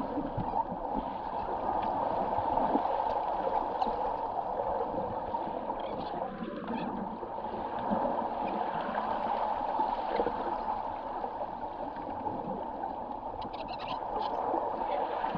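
Pool water heard from underwater through a camera's housing: a steady, muffled rush of water with occasional faint clicks as swimmers kick and tussle nearby.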